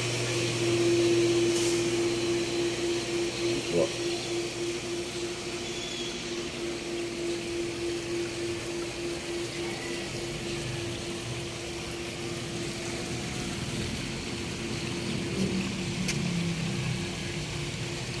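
Swimming-pool filter pump motor humming steadily, loudest at first and fading gradually over the rest of the stretch.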